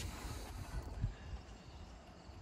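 Faint outdoor background noise, a low steady hiss and rumble, with one light click about a second in.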